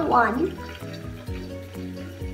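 A child says one word, then background music with held notes that change every half second or so plays on, under a faint hiss.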